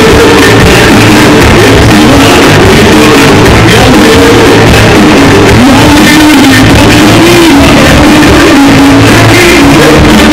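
Loud live pop music from a band, with a singing voice carrying the melody over a steady low beat.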